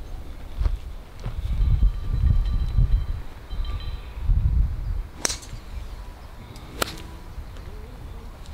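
Gusty wind rumbling on the microphone, then a golf club striking a ball off the tee with a sharp click about five seconds in, followed by another sharp click a second and a half later.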